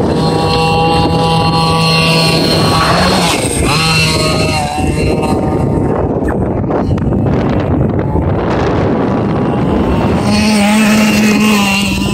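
Losi DBXL 1/5-scale RC buggy's engine running, holding a steady pitch and then revving up and down a few times, steadying at a higher pitch near the end, with wind on the microphone.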